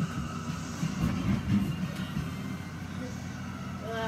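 Irregular low thumps and rustling of a person tumbling about on a floor, with a short vocal sound right at the end.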